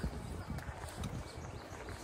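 Faint footsteps on paving, about two a second, over low outdoor background noise.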